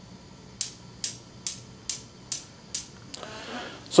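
Steel balls of a Newton's cradle clacking together in a regular series of sharp clicks, a little more than two a second. Each click is one swinging ball striking the row of stationary balls.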